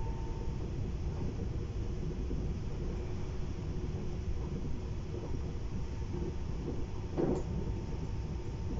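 Steady low rumble of a regional train running at speed, heard from inside the passenger carriage, with a single short knock about seven seconds in.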